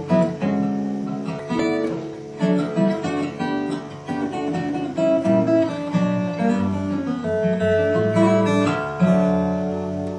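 Acoustic guitar in DADGAD tuning, plucked in a flowing passage that mixes open strings with fretted notes, the notes left ringing over one another.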